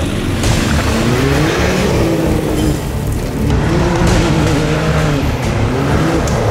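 Can-Am side-by-side's engine revving up and falling back twice as it drives on a dirt road, with tyre and gravel noise beneath.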